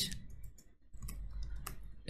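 Computer keyboard being typed on: a series of light, irregularly spaced key clicks as text is entered.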